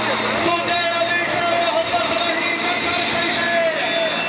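A man's voice amplified through a microphone and loudspeaker, chanting in long, drawn-out held phrases, with a steady low hum underneath.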